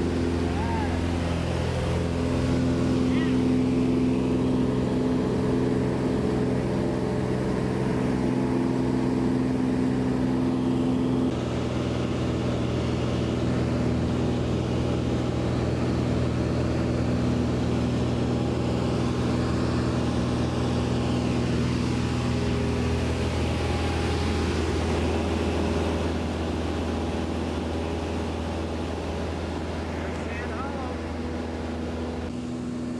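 Single-engine high-wing light aircraft's piston engine and propeller, heard inside the cabin, running at high power through takeoff and the start of the climb as a loud, steady drone. The note shifts slightly about eleven seconds in, and the level eases a little near the end.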